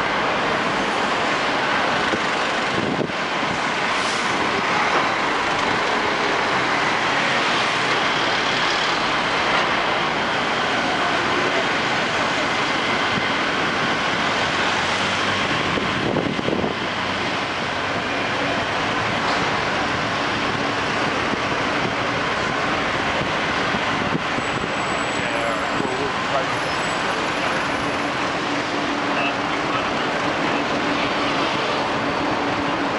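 Street traffic noise on a busy city street: a steady mix of vehicle engines and tyres, with passers-by's voices in the background.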